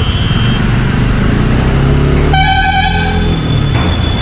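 Motorcycle engine and road rumble while riding slowly through traffic, the engine pitch rising as it picks up speed. Just past halfway a vehicle horn sounds once for about a second.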